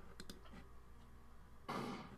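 A few computer mouse clicks just after the start, then a short burst of noise near the end.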